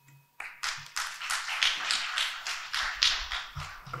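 Audience applauding, starting about half a second in.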